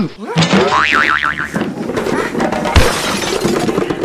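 Edited-in cartoon comedy sound effects for a fall: a falling glide, then a wobbling boing about a second in, then a thud and a crash near the three-second mark, over background music.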